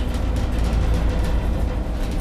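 Steady low rumble and running noise inside a moving aerial cable car cabin, with faint background music under it.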